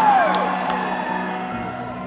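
Live band music heard from the audience: a held high note falls away at the start, then a steady sustained chord rings on through a quiet passage between sung lines.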